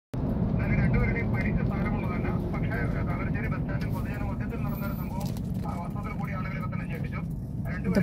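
Steady low road and engine rumble heard from inside a moving vehicle, with indistinct talking underneath.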